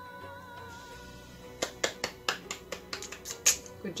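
Music holding a sustained note, then about ten sharp single hand claps from one person at about five a second, starting about a second and a half in.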